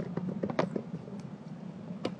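Small box being handled and opened by hand: a quick run of light clicks and taps in the first moment, and one more just over a second in.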